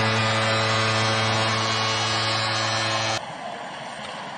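Arena goal horn sounding one long, steady, low blast for a Seattle Kraken home goal, over a cheering crowd; it cuts off suddenly about three seconds in, leaving quieter arena noise.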